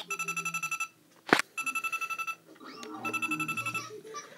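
Electronic Deal or No Deal game's small speaker playing its banker phone-ring tone: three short bursts of rapid electronic trilling beeps, the signal of an incoming bank offer. A single sharp click falls between the first and second bursts.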